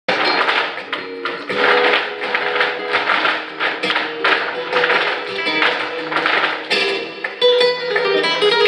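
Flamenco music with guitar, over the rhythmic stamping footwork (zapateado) of a troupe of dancers in heeled shoes.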